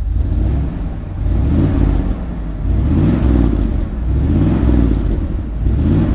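Bentley Turbo R's 6.75-litre turbocharged V8 running through a large aftermarket exhaust, heard close at the tailpipe, its engine speed rising and falling several times as it is revved on the spot.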